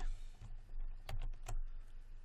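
A few sharp clicks from a computer keyboard and mouse, three of them close together a little after a second in, over a faint steady low hum.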